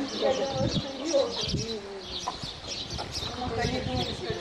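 Birds chirping in short high calls over the indistinct talk of a group of people.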